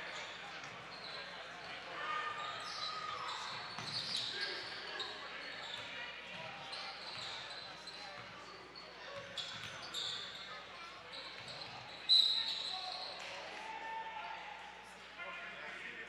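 Live gym sound of a basketball game: a ball being dribbled on the hardwood court over chatter from players and the crowd in a large hall. About twelve seconds in comes the loudest sound, a sudden short blast that fits a referee's whistle stopping play.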